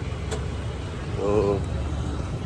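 Outdoor background noise with a steady low rumble, and a brief word or two from a voice about a second and a half in.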